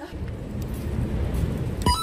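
Steady low rumble of street and traffic noise on a handheld camera microphone. Near the end comes a sharp click and a short electronic alert tone.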